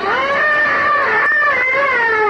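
A person's voice in one long, high wailing cry, rising at the start and then held, without words.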